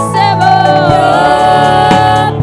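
A woman singing a gospel song through a microphone, holding long notes that slide in pitch.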